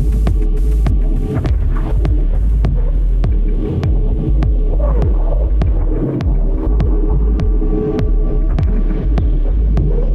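Electronic dance music from a DJ mix: a deep, steady sub-bass drone under layered mid-range tones, with a crisp tick about twice a second. The top end thins out after the first few seconds.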